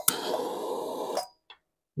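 Butane torch lighter clicking on and its jet flame hissing steadily for just over a second, then shutting off abruptly, as it lights a wick jar.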